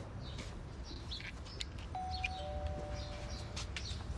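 Birds chirping over a low steady rumble. About two seconds in, a two-note door chime sounds, the second note lower than the first, each held for over a second.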